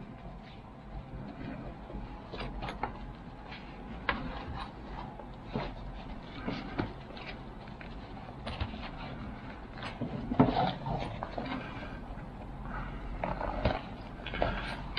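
Hands threading short lengths of paracord through the zipper pulls of a nylon pouch: quiet, scattered clicks and rustles of cord, zipper tabs and fabric, with a louder cluster of handling knocks about ten seconds in.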